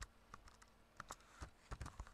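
Faint clicks of a computer keyboard: about eight separate keystrokes, spaced irregularly, with a quick cluster in the second second.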